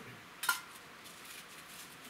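A single sharp metallic click about half a second in, with a brief ring, from small gear being handled at the bench; otherwise only a low background hiss.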